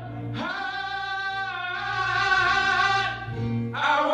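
A man singing a gospel solo through a microphone. He holds one long note from about half a second in, and a new phrase begins just before the end.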